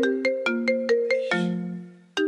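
Phone ringtone: a quick run of bright, struck, marimba-like notes, about four a second, ending on a held lower note that fades away. It signals an incoming call.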